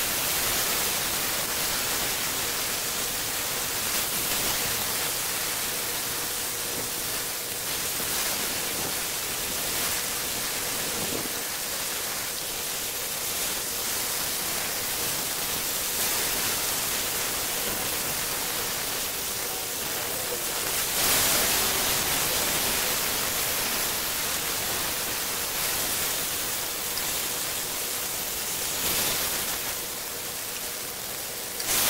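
Thin beef slices and garlic sizzling steadily in a hot grill pan, getting briefly louder about two-thirds of the way through.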